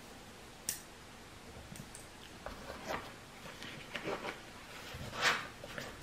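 Faint handling noise of small survival-kit tools and items: scattered light clicks and rustles, with a sharper click a little before a second in and a louder rustle a little after five seconds.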